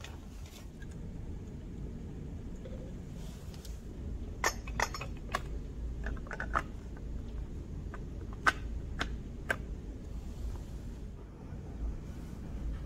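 Light clicks and taps of hard plastic as a small desk humidifier is handled and set up, switched on by its button. There are several sharp clicks from about four to ten seconds in, over a low steady hum.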